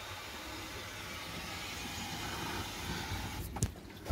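Water from a garden hose running over the vehicle's body and rear quarter panel, heard from inside as a steady hiss that grows slightly louder. About three and a half seconds in come a couple of sharp clicks as a hand handles the plastic interior trim.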